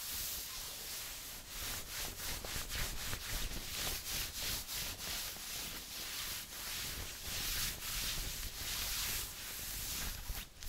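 Long fingernails scratching and rubbing over a floral-print skirt's fabric, a continuous scratchy hiss in quick repeated strokes, about two to three a second.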